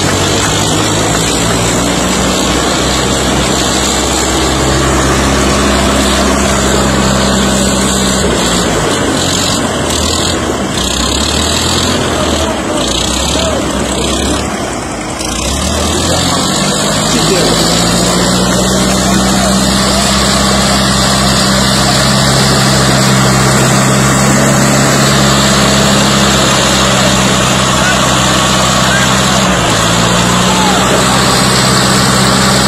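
Romanian-made farm tractors' diesel engines running hard under load in a tractor pulling challenge. The engine note sags and falters between about nine and fifteen seconds in, then climbs back up about sixteen seconds in and holds high and steady.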